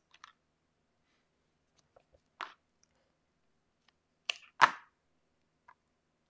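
Paper and scissors being handled on a cutting mat: a few brief, scattered rustles and taps, the loudest a short sharp tap about four and a half seconds in.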